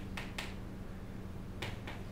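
Four light, sharp clicks in two quick pairs about a second and a half apart, over a steady low hum.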